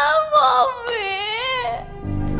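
A woman sobbing and wailing in a high voice that wavers, in long drawn-out cries with short catches of breath between them.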